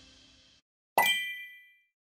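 The tail of electronic outro music fading out, then about a second in a single bright metallic ding that rings briefly and dies away: a logo sound effect.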